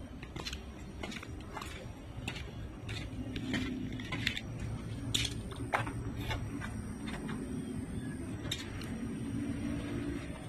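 Scattered footsteps on concrete steps, then a key rattling and clicking in a wooden door's lock, with sharper clicks about five and six seconds in. A low steady hum runs underneath from about three seconds in.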